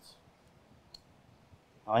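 A pause in a man's speech, near silent apart from one short, faint click about a second in; his voice starts again near the end.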